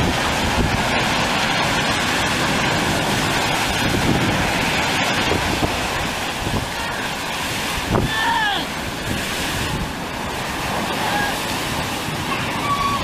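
Heavy storm surf breaking and rushing up the beach, with strong wind buffeting the microphone throughout. A short thump and a brief high cry come about eight seconds in.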